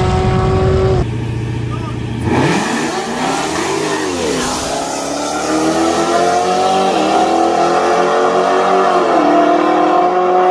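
A car accelerating hard away down the street, its engine pitch rising and falling at the launch and then climbing steadily, with two upshifts near the end. It opens with about a second of a steady engine note from another car, which cuts off.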